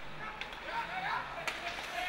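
Ice hockey rink during play: faint distant voices of players or spectators, with two sharp clacks of sticks on the puck.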